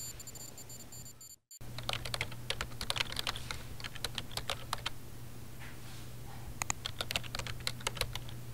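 Typing on a computer keyboard, entering a name into a search box: a quick run of keystrokes, a pause, then a second shorter run, over a steady low hum.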